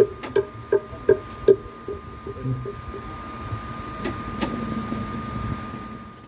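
Plucked-string music played through a large outdoor sound system during a sound check: a quick run of plucked notes, about three a second, that fades after the first second and a half, over a steady high tone. The sound fades out at the end.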